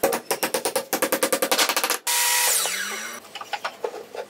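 Hammer striking a wooden key to drive it into a scarf joint in a beam: a rapid run of sharp knocks, about ten a second. About halfway through the knocks stop abruptly and a loud rushing noise with a falling pitch takes over, fading out after about a second.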